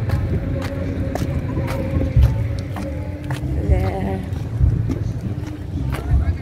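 Wind rumbling against a handheld phone's microphone in uneven gusts, with voices and faint music in the background and occasional handling clicks.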